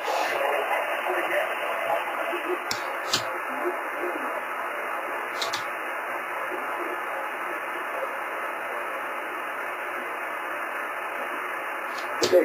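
Steady hiss from an amateur radio receiver's speaker, held within the narrow voice passband, while listening for a reply on the 10 GHz link with no clear signal copied. A few clicks sound near the start and middle.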